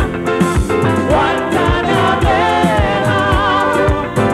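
Live soca band playing: a steady kick drum about two beats a second under held keyboard chords, with voices singing a wavering, vibrato-laden line from about a second in.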